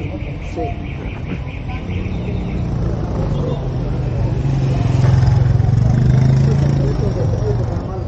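A motorcycle engine passing close by, growing louder to a peak about five to six seconds in, then fading. A quick, even ticking is heard over the first two to three seconds.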